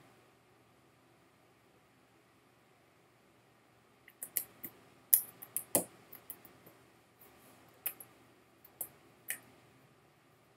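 Small wet mouth clicks and lip smacks from someone tasting a sip of whisky: a scattered run of about a dozen short clicks starting about four seconds in, the loudest near the middle.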